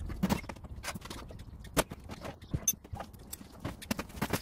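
Irregular metal clanks, knocks and rattles from an electric oven's sheet-metal casing and back panel being handled and pulled apart, with a short high metallic ping about two-thirds of the way in.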